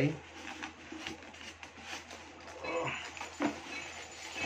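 Quiet rustling and light knocks of cardboard box packaging and a plastic-bagged power cord being handled while the contents are pulled out, with a brief voice about three seconds in.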